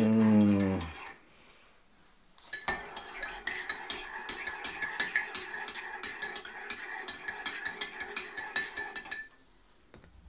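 A metal spoon stirring coffee in a ceramic mug, clinking rapidly against the sides with a thin ringing of the mug. It starts about two and a half seconds in and stops shortly before the end.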